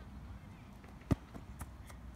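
A football kicked: one sharp thud of a foot striking the ball, about a second in, over faint outdoor background.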